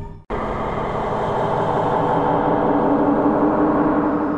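A dense, rumbling drone with a few held tones starts suddenly just after the previous music cuts off. It swells gradually and stays loud: a dark ambient sound-effect bed.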